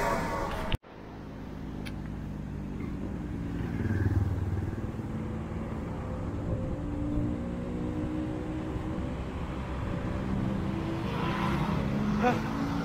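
Road traffic on a wide city road: the low hum of car and motorcycle engines, swelling as a vehicle passes about four seconds in and again near the end. The sound cuts out abruptly just under a second in, then the traffic sound returns.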